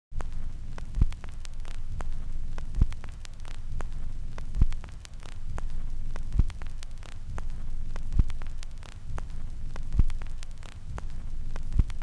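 A low hum with a deep, regular thump about every two seconds, under scattered crackling static.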